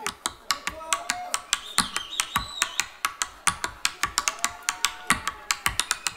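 Tap dance solo: tap shoes striking the stage in quick, uneven clicks, several a second.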